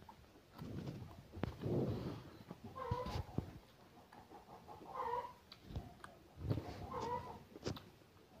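Eating by hand: fingers pressing and gathering rice on a banana leaf, with chewing and small clicks, and three short pitched calls about two seconds apart.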